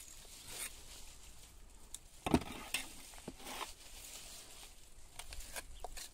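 Faint scattered scrapes and taps of fresh cement mortar being pressed and worked by hand into a stone wall's joint. The loudest is a knock a little over two seconds in.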